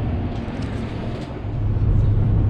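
Steady noisy hum, then road and engine noise inside a moving truck's cab, with a low rumble that grows louder about one and a half seconds in.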